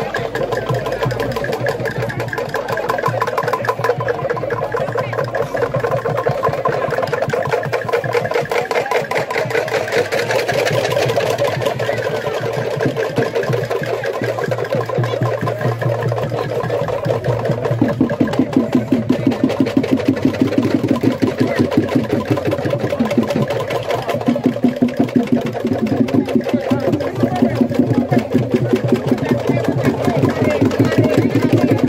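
Traditional Langoron dance of Matupit Island, Papua New Guinea: a group of men chanting together over a fast, even percussive clatter. From about halfway through, the beat grows stronger, pulsing about twice a second.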